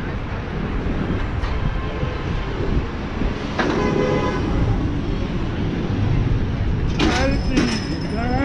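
Busy city street: a steady low rumble of passing traffic, with passers-by's voices briefly near the end.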